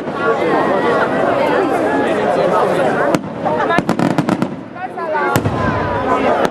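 Aerial fireworks going off, with a sharp bang about three seconds in, a quick run of cracks just after and another bang near the end, over people talking close by.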